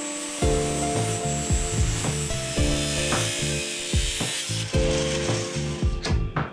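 Steady hiss of a small steel part being ground against a spinning abrasive disc, throwing sparks, under background music with a steady beat.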